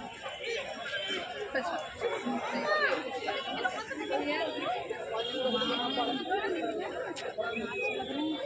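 Crowd chatter: many people talking at once, their voices overlapping.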